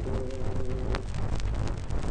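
The tail of a man's unaccompanied sung "oh" fades out about a second in, leaving the hiss, crackle and scattered clicks of a 78 rpm disc recording's surface noise.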